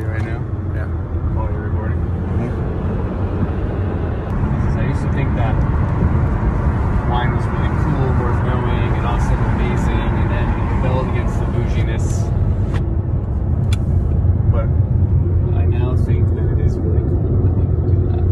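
Steady road and engine rumble inside the cabin of a moving car, with a man talking over it.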